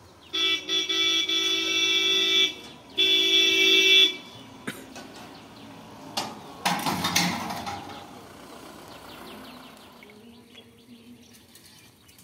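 A horn sounds two long, steady blasts, the first a little over two seconds and the second about one second. A short burst of noise follows a few seconds later.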